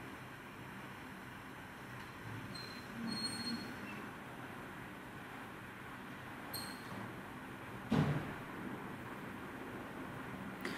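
Faint steady background noise, with a few brief high tones about three seconds in and a single sharp thump about eight seconds in.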